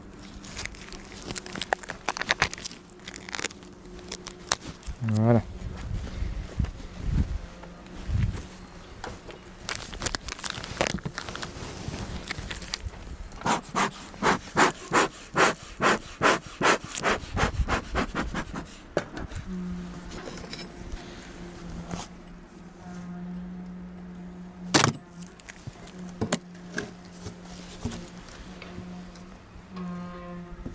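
Hive tool scraping and clicking as it cuts through the plastic wrap of a fondant candy block, then a beekeeper's bellows smoker pumped in a quick run of about a dozen puffs, two or three a second, past the middle. A steady low hum runs underneath and grows louder in the last third.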